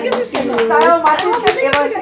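Irregular hand claps from a few people, mixed with women's voices talking over them.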